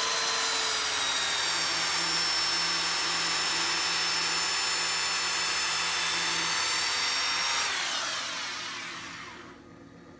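Handheld electric belt sander running against a spinning quarter midget racing tire, sanding the freshly cut rubber tread smooth. A loud, steady whine with several high tones that fades away about eight seconds in.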